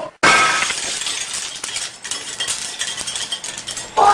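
Glass shattering in a sudden crash about a quarter second in, then a long tinkling clatter of small pieces that slowly dies away.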